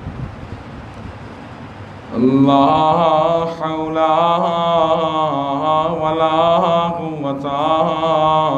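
Steady background hiss, then about two seconds in a man's voice begins chanting through a microphone in long, drawn-out melodic notes: the cleric intoning the Arabic opening of his sermon.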